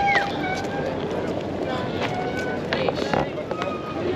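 Footsteps of people walking across a concrete quay, with scattered voices over a steady outdoor rush.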